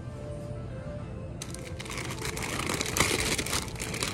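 Plastic snack-chip bags crinkling as they are handled and pulled from a store shelf. The crinkling starts about a second and a half in and grows busier, over faint background music.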